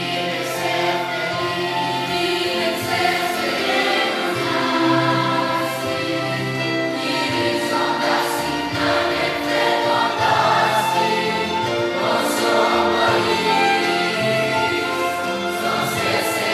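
Mixed youth choir of boys and girls singing a choral song in Greek, the voices holding sustained chords.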